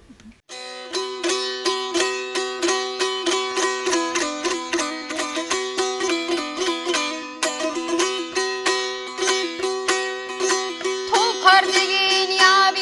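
Karakalpak dutar, a two-stringed long-necked lute, strummed in quick, even strokes: a steady drone note sounds under a stepping melody. Near the end a woman's singing voice comes in over it.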